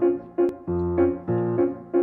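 Grand piano playing a rhythmic figure of repeated chords over a low bass, about three strikes a second.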